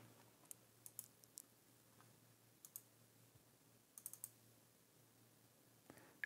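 Near silence broken by a few faint computer mouse clicks. They come singly and in small groups of two or three over the first four and a half seconds.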